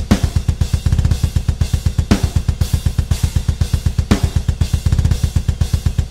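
Programmed MIDI drums played back through a sampled drum kit: a rapid, even double-kick bass drum under steady cymbals, with a heavy accented hit every two seconds. Every note is at the same full velocity of 127, so each hit sounds identical, the machine-like, robotic quality of unhumanized MIDI drums.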